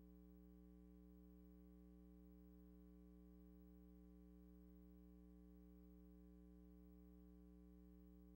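Near silence with only a faint, steady hum of several even tones that never changes.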